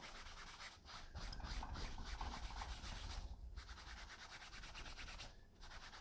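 Faint rubbing of a wet heavy-duty hand wipe scrubbed quickly back and forth over a felt hat's fabric liner, with two short pauses, about three and a half and five and a half seconds in.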